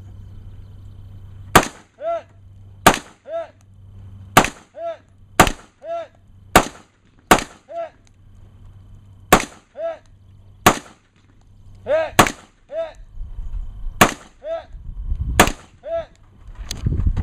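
Gunshots fired at a steady pace, about a dozen roughly a second apart, each answered about half a second later by a short ringing return from downrange. Low rumble builds near the end.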